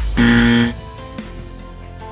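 A short, loud 'wrong answer' buzzer sound effect, about half a second long, marking a mistake, over background music.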